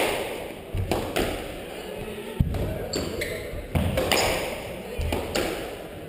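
Squash rally: the ball struck by rackets and smacking off the court walls, several sharp hits about a second apart, each ringing in the enclosed court, with the players' footsteps on the wooden floor between.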